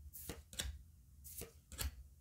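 Flesh and Blood trading cards being slid off a stack by thumb, one card past the next: a handful of short, faint card flicks at uneven intervals, with a quick pair near the end.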